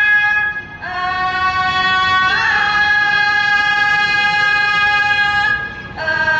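A woman singing in Thai classical style to accompany a khon dance, holding long high notes: a short break just under a second in, then a new note that steps up with a small ornament about two and a half seconds in and is held until it fades near the end.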